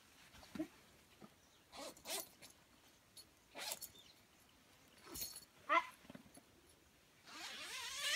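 Tent door zipper being pulled in short rasping bursts, then a longer, louder zipping near the end as the mesh door is opened.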